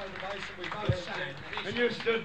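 Indistinct talking between songs on a muffled 1960s live audience recording, with no music playing. A low knock comes about a second in.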